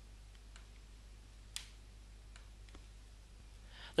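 A few faint, scattered computer mouse clicks, one a little sharper about a second and a half in, over a steady low hum.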